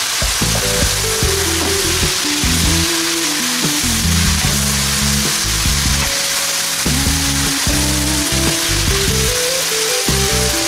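Chicken pieces, mushrooms, onion and leek frying in oil in a pan: a steady sizzle, with background music over it.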